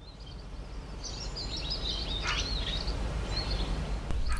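Outdoor ambience that fades in: a steady low rumble with small birds chirping over it, in a run of short high chirps through the middle, one of them sweeping down in pitch.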